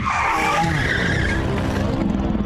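Logo-intro sound effect: a loud, noisy rushing whoosh with a low rumble under it, skid-like, holding steady.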